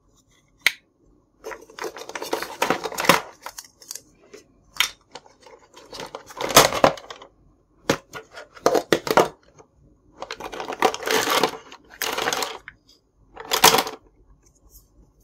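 Hard plastic pieces of a Minnie Mouse toy kitchen playset (pot lids, cups, the carry case) being picked up, set down and knocked together, in short clattering bursts with brief pauses between them.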